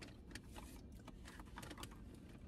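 Faint, irregular small clicks and crinkles of fast-food packaging and food being handled inside a car, over a low steady rumble.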